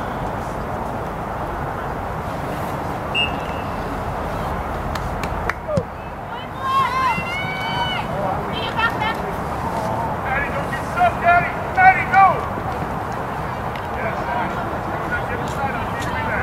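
Shouts and calls of several voices during a soccer game, coming in short high-pitched spurts from about six and a half seconds in, over steady background noise.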